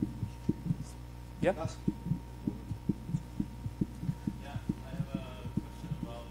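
A man's single rising "yeah?" about a second and a half in, then faint, distant speech from a questioner off the microphone. Under it runs a continual train of low, soft thumps, about three a second.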